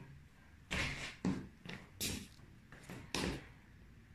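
About six short scuffing and knocking noises in quick succession over a couple of seconds, made by someone moving right next to the microphone.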